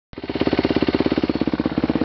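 Motocross dirt bike engine idling, with an even, rapid pulsing beat.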